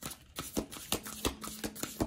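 A tarot deck being shuffled by hand: a run of quick, irregular card flicks and slaps.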